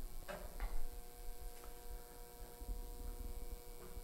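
A faint steady electrical hum, with a few soft knocks in the first second as a large wooden menorah is handled and set upside down on its stand.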